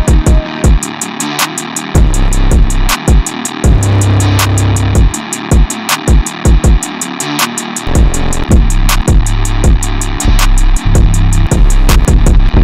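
Trap beat looping in FL Studio at 160 BPM, with steady hi-hats ticking about five times a second, kick and clap hits and a metallic melodic sample. Long deep 808 bass notes come and go over the loop as 808 samples are previewed one after another.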